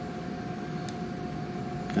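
Steady background hum with a faint high steady tone, and one faint small click about a second in.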